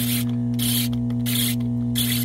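Steady electrical mains hum from the septic control panel, with a short rasp about every two-thirds of a second as the mechanical 24-hour timer dial is turned by hand. No switching click comes from the timer: its contacts are charred and it is dead.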